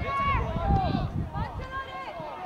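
Children's high-pitched voices shouting and calling out across a football pitch, with a low rumble under them for the first second and a half.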